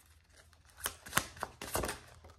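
A tarot deck shuffled by hand: a few short, quiet card snaps and flicks a little under a second in, then a quick cluster of them near the end.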